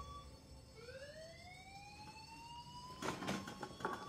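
A single high tone sweeping slowly upward in pitch over about two seconds, like a siren winding up, over a quiet background. Near the end, a burst of clattering knocks.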